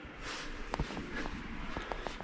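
Footsteps and clothing or handling rustle of a person walking, with a few light clicks of steps.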